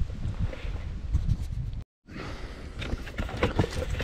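Outdoor wind and camera-handling noise with scattered light knocks and rustles, broken by a brief drop to total silence about halfway through.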